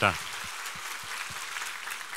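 A congregation applauding: many hands clapping in a steady patter.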